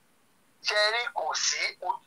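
Speech only: a short pause, then a person's voice talking from about half a second in.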